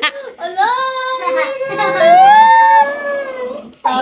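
A voice holding one long, steady 'ooh' note for over three seconds. A second, higher voice slides upward over it for about a second in the middle. Both cut off just before the end.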